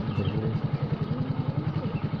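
Petrol motorcycle engine running at low speed as the bike is ridden slowly, a steady, evenly pulsing low beat.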